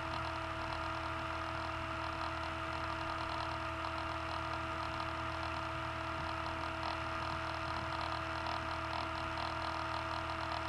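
Steady electrical hum with two constant tones over a low hiss, unchanging throughout.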